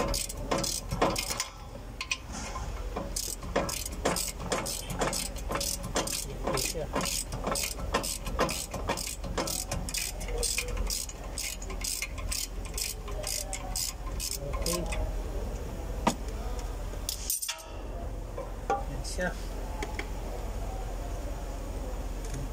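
Ratchet wrench clicking steadily, about three clicks a second, as a socket turns out a bolt on a car's rear brake assembly. The clicking stops about fifteen seconds in, followed by lighter metal handling noises.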